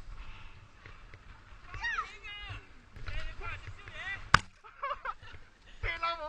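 High, excited voices of people and children shouting in play on a snowfield, with one sharp knock a little after four seconds in. A low wind rumble on the microphone runs underneath.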